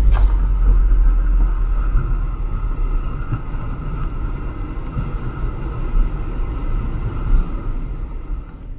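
Strong wind buffeting the microphone: a heavy, uneven rumble with a faint steady whistle above it.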